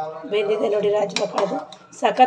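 A metal ladle stirring in an aluminium pressure cooker and clinking against the pot twice, just past the middle, under a voice talking.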